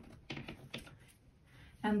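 A few light taps and clicks in the first second as hands handle a small woven leather handbag on a table. A spoken word follows near the end.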